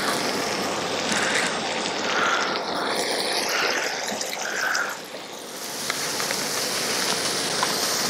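Butter and olive oil sizzling on a hot propane disc griddle (skottle) as rice is worked in with a spatula: a steady frying sizzle with small crackles, dipping briefly about five seconds in.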